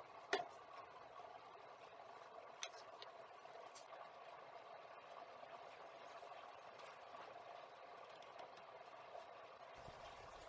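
Near silence: faint steady room tone, with a brief click just after the start and a fainter tick about two and a half seconds in.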